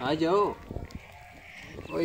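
A single short bleat from a sheep or goat, about half a second long near the start, rising and then falling in pitch.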